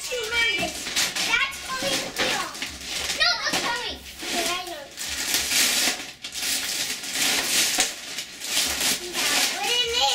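Wrapping paper being torn and crumpled off a present, a dense crackling rustle through the middle of the clip, with children's high-pitched voices calling out in the first few seconds.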